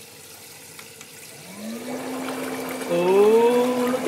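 Electric foot spa bath's jet motor switching on about a second and a half in, its hum rising in pitch and then holding steady as the water starts to churn and bubble. A voice rises over it near the end.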